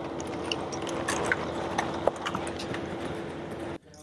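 Footfalls of several people in combat boots running on asphalt, an irregular patter of steps, over a steady low hum. The sound cuts off suddenly just before the end.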